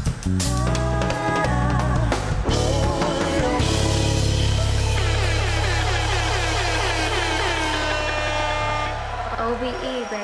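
Live funk/soul band with backing singers: drums and bass hit for the first few seconds, then the band holds a long low chord with voices singing gliding runs over it, easing off near the end.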